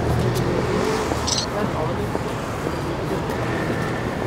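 City street ambience: a steady rumble of road traffic with voices of passers-by in the background, and a short hiss about a second in.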